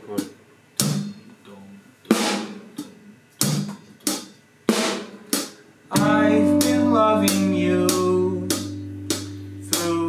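Drum kit played on its own in a slow, sparse pattern of snare hits and ringing cymbal strikes, about one a second. About six seconds in, other instruments come in with held, pitched notes under the drums.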